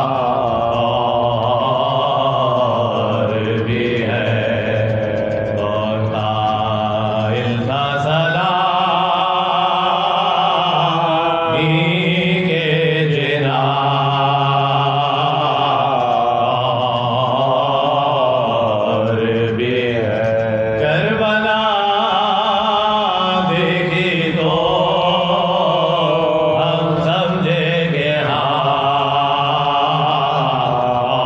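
Soz khwani, the elegiac chant of Shia mourning, sung by voice alone in long held notes that slowly waver and shift pitch every few seconds.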